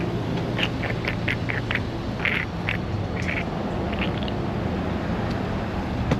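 Steady low hum of street traffic and idling vehicles, with a run of short high chirps in the first four seconds.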